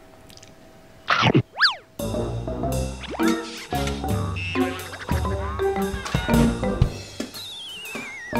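Comic sound effects and music: a short whoosh about a second in and a springy boing, then playful background music dotted with cartoon boings. Near the end comes a wobbling, falling whistle.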